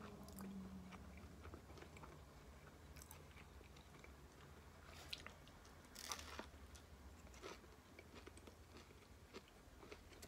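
Faint chewing and crunching of a hard taco shell wrapped in a soft flour tortilla, with the loudest crunching bite about six seconds in.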